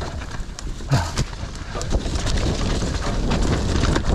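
Mountain bike clattering and rattling over a rough, rooty, leaf-strewn dirt trail at speed: a stream of knocks from the bike over a low tyre rumble, with wind on the microphone. A short grunt about a second in.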